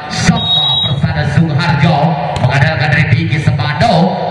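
A man's voice talking, with one short high steady whistle blast about half a second in, typical of a referee's whistle signalling the serve.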